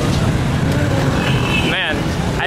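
Street traffic: a steady rumble of motorcycle and motorcycle-rickshaw engines, with a brief high tone and a person's voice near the end.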